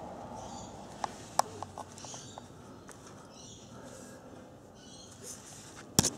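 Faint handling noise from a handheld camera being moved about: soft rustling every second or so and a few light clicks, the sharpest about a second and a half in.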